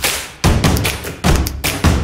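Intro music sting built on deep percussive thumps, about five hits in two seconds, each with a heavy bass punch.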